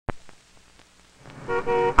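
A car horn honking twice, two short steady toots near the end. A single sharp click at the very start.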